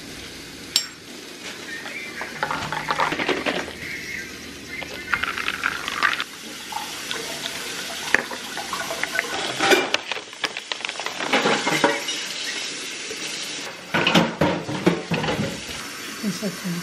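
Iced coffee being mixed in a glass: ice, a spoon and straw clinking and knocking against the glass, with glassware set down on a stone countertop and some liquid poured. Irregular clinks throughout, with a louder clatter near the end.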